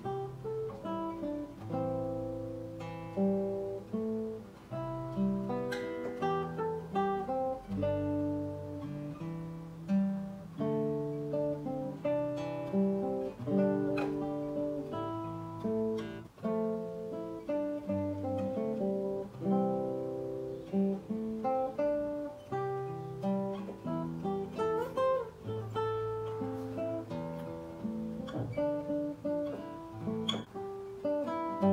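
Solo nylon-string classical guitar, fingerpicked, playing a slow melody over bass notes, with each plucked note ringing on.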